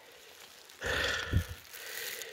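A man's short breathy exhale about a second in, with a soft low thump partway through.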